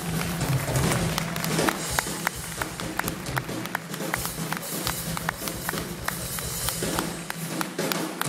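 Live instrumental band music: a drum kit played with sticks, with a run of crisp, evenly spaced stick taps, about three or four a second, through the middle, over sustained low notes from the guitar side of the band.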